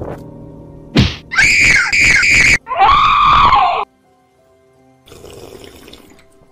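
Several dubbed voices screaming in confusion: a short sharp cry about a second in, then longer overlapping screams that cut off suddenly just before four seconds. Faint background music runs underneath, and a brief rush of noise comes near the end.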